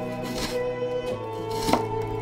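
Kitchen knife chopping a garlic clove on a cutting board: two sharp knocks of the blade, about a second and a quarter apart, the second louder, over background music.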